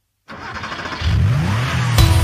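A car engine starting and revving up, a sound effect heading the song's intro: the engine catches suddenly a quarter second in and its pitch rises as it revs about a second in.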